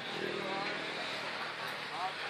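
Busy street-stall ambience: background voices talking over the noise of passing motor traffic.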